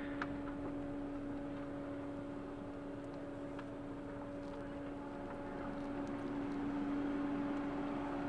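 Low steady hum of a car heard inside its cabin as it creeps slowly forward, one constant tone over a faint rumble, growing slightly louder near the end.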